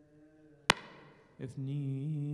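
A single sharp knock with a short ring, then, about a second later, a man's voice begins chanting a liturgical prayer on a steady, held pitch.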